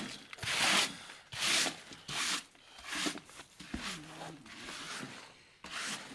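Hand brush sweeping dust and grit across a hard floor at the foot of a brick wall, in a series of short brushing strokes roughly one a second.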